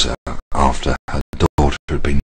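Chopped-up voice: short fragments of speech a fraction of a second long, each cut off sharply with silence between, too garbled to make out words.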